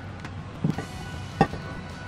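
Large kitchen knife cutting down through a watermelon rind, with two short sharp knocks, the first about two-thirds of a second in and the second about a second and a half in, over quiet background music.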